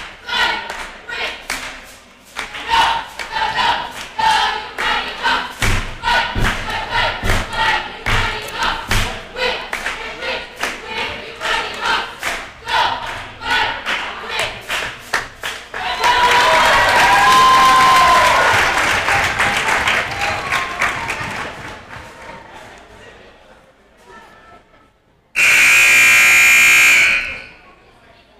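Cheerleaders chanting a cheer in unison with sharp rhythmic claps and stomps, then breaking into loud cheering and yelling that fades away. Near the end a gym buzzer sounds for about two seconds, signalling the start of the second quarter.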